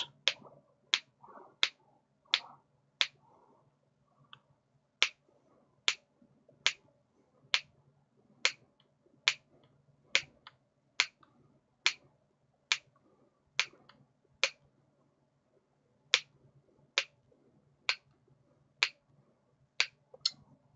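Hex driver turning a stiff self-tapping screw into a plastic RC axle housing, the screw cutting its own thread. It gives a sharp click about once a second in a steady rhythm, pausing twice briefly.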